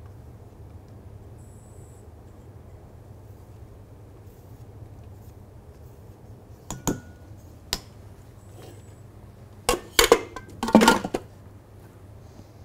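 A spatula scraping and knocking against stainless steel mixing bowls as whipped cream is folded into chocolate mousse. A couple of sharp clinks come just past the middle, then a louder clatter near the end, over a steady low hum.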